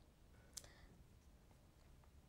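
Near silence: room tone, with one faint short click a little over half a second in and a few fainter ticks after it.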